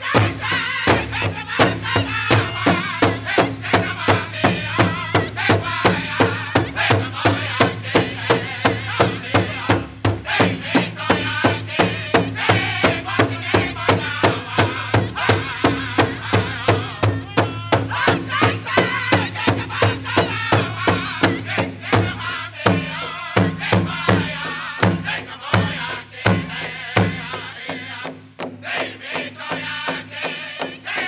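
A powwow drum group plays a grass dance song: several singers sing together over a big drum struck in a steady unison beat, about two to three beats a second. In the last few seconds the drumbeat breaks from its even pattern into uneven, grouped strikes.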